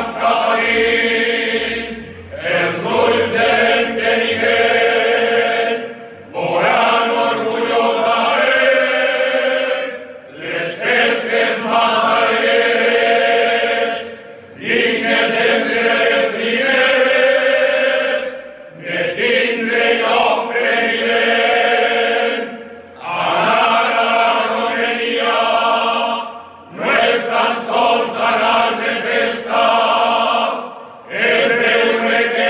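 A men's group chanting verses together in unison, unaccompanied, in a sung chant-like melody. Each line lasts about four seconds, with a brief break for breath between lines.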